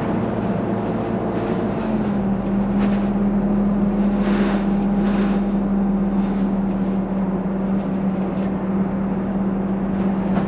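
Dennis Dart SLF single-deck bus heard from inside the saloon while under way: a steady engine drone whose note shifts about two seconds in and then holds steady, with a few brief rattles over it.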